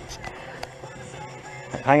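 Rock music playing from a boat radio in the background, with a few light clicks; a man's voice starts near the end.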